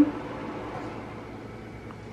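Bathroom ceiling exhaust fan running with a steady whir, and a faint click near the end.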